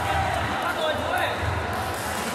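Indistinct voices in a large sports hall, with a few dull low thuds.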